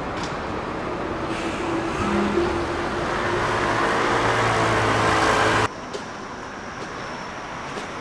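Street traffic noise with a motor vehicle engine running close by, its steady low hum growing louder over the first five seconds. About five and a half seconds in, it cuts off suddenly to a much quieter steady outdoor hush.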